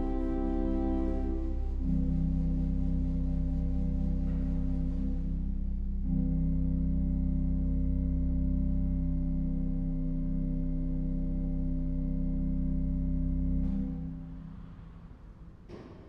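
Church pipe organ playing the slow closing chords of a piece over a held low pedal note. The chords change twice, and the final chord is released about 14 seconds in, its sound dying away in the church's reverberation.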